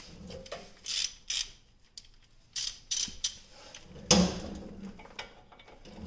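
A ratchet and socket clinking as they are handled and set onto the brake caliper's bolts: a handful of separate short metal clinks, the loudest about four seconds in.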